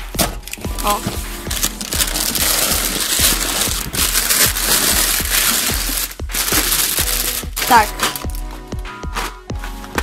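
Clear plastic air-cushion packaging rustling and crinkling as it is handled and pulled out of a cardboard box. It is continuous and about as loud as the voice, with background music underneath.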